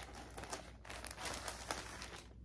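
Rustling and crinkling as a braid of dyed wool fiber is rummaged for and pulled out: a run of small, irregular crackles.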